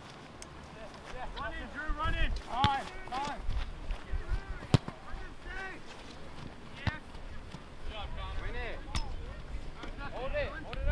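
Players shouting and calling to one another during a youth soccer match, in scattered bursts. A few sharp thuds of the ball being kicked come through, the loudest about halfway through.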